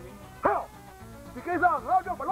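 A man's raised voice over faint background music, with one short, sharp cry about half a second in.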